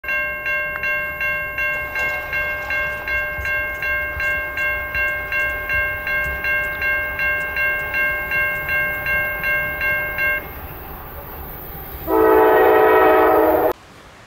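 Railroad grade-crossing bell ringing at nearly three strokes a second while the crossing gates lower, falling silent about ten seconds in. Near the end a train's air horn sounds one loud blast of under two seconds, cut off abruptly.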